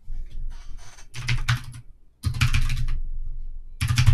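Computer keyboard typing: runs of quick keystroke clicks with short pauses between them.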